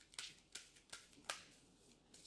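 Faint, soft clicks of a tarot deck being shuffled by hand, about four card snaps in the first second and a half.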